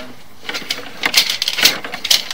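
Sewer inspection camera's push cable being fed down the line, with irregular clicking and rattling that starts about half a second in.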